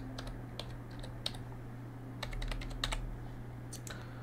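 Typing on a computer keyboard: faint, irregular key clicks at an uneven pace as a password is keyed in.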